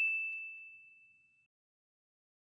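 A bright single-tone ding sound effect, the notification-bell chime of an animated subscribe button, fading out within about a second.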